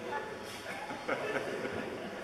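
Faint, indistinct murmuring voices of a lecture-hall audience over steady room noise.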